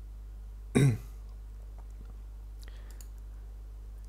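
A man coughs once, briefly, about a second in, followed by a few faint clicks near three seconds, over a steady low hum.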